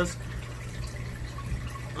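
Aquarium air stone bubbling steadily, a soft continuous fizz of rising bubbles, with a steady low hum underneath.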